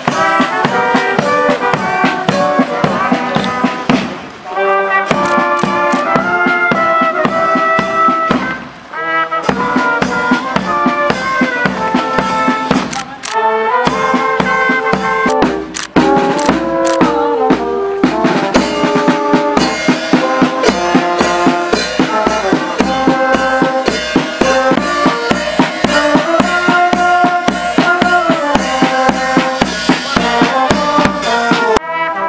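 A marching brass band playing: trumpets and trombones carrying a tune over a steady bass-drum beat, broken off and resumed a few times.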